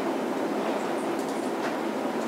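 Steady background noise with no distinct events.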